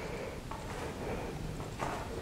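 Quiet room noise with a few faint, soft sounds of bare feet shifting on a yoga mat.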